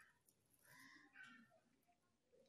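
Near silence: room tone, with a faint brief sound about a second in.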